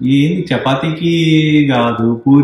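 A low voice singing or chanting a long held note, starting with a short rising phrase and held steady from about half a second in until just before the end.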